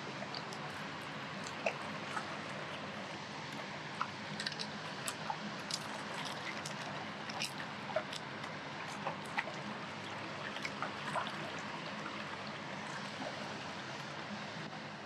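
River water running and lapping against the rocks at the water's edge: a steady wash with many small scattered ticks and drips.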